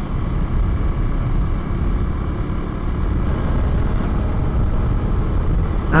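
Husqvarna Svartpilen 401's single-cylinder engine running steadily while riding at road speed, under heavy wind noise on the microphone.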